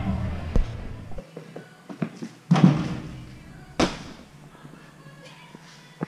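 Thuds and slaps of a gymnast tumbling and landing on a sprung floor mat, the loudest about two and a half seconds in and a sharp one near four seconds, over faint gym hall noise.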